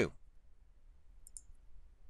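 A faint, quick double click of a computer mouse about a second in, against quiet room tone.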